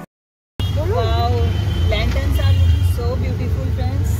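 Auto-rickshaw ride heard from inside the cabin: a steady, heavy low engine and road rumble that starts abruptly about half a second in, with voices of people in the street traffic over it.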